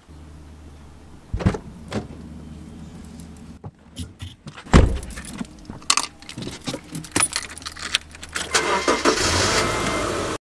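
Someone getting into a car: knocks of the car door, the loudest about five seconds in, then clicking and jingling from the seatbelt buckle and a bunch of keys. Near the end a louder steady noise begins as the car is started.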